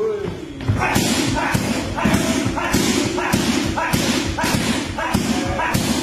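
Rapid strikes on leather Thai pads, about two a second, each a sharp slap-thud, with a short vocal call from the trainer or fighter on each strike.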